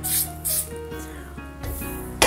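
Two short hisses from an aerosol can of vegetable-oil cooking spray, greasing a metal cake ring, over steady background music.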